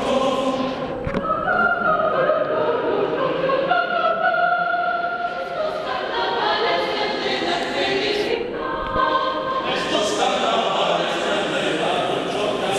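Mixed choir singing an Arequipa carnival song in several parts, holding long sustained chords, with a short break in the phrase about nine seconds in.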